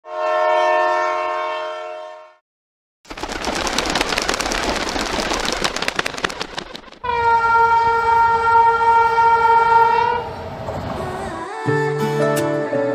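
A train horn sounds for about two seconds. After a brief gap a train rattles past with its wheels clicking over the rail joints, and a second horn blast follows, held for about three seconds. Music with plucked guitar starts near the end.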